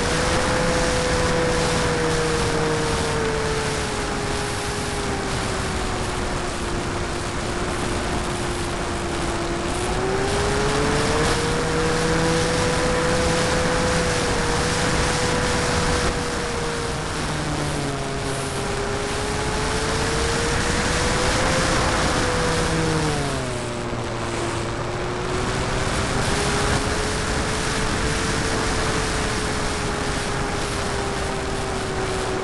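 Onboard sound of an 800mm foam RC Corsair in flight: its electric motor and propeller whining, the pitch rising and falling with the throttle, over a steady rush of wind on the microphone. The whine drops sharply about three-quarters of the way through, then climbs back.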